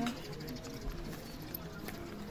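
Restaurant ambience: distant voices of diners and scattered light clicks and clinks, the brightest near the end.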